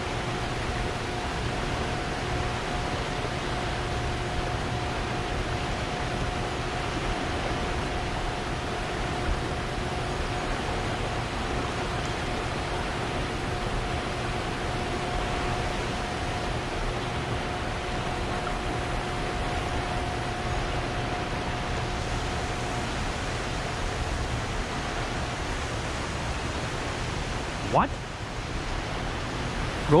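Fast, high river water rushing over rapids, a steady, even noise. A faint steady tone runs under it and stops a few seconds before the end.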